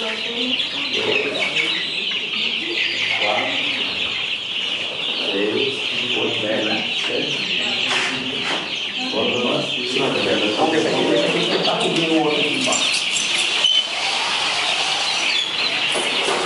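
A crowd of young Bankiva-line caipira chickens calling inside plastic transport crates: a dense, continuous chorus of many overlapping high-pitched calls, with men talking underneath.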